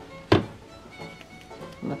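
A single sharp knock of a metal spoon against a dish while scooping frozen orange sorbet, about a third of a second in, over faint background music.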